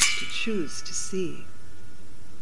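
Music: a metallic chime is struck once at the start and rings out, fading over about a second and a half, while two short falling vocal slides sound softly beneath it.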